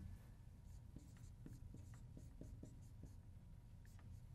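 Marker writing on a whiteboard: a faint series of short strokes and taps of the felt tip against the board as a word is written out.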